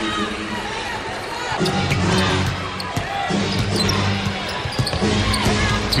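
A basketball bouncing on a hardwood arena court, with arena music playing steady low notes from about a second and a half in.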